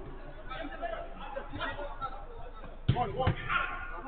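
Two hard thuds of a football being struck, about half a second apart near the end, over players' voices calling across the pitch.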